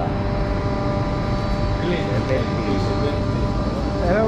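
Steady machinery hum, with several held tones over a low rumble, with faint voices in the middle.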